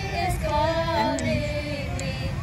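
A woman and children singing a hymn together, their voices holding and sliding between notes, over a steady low rumble.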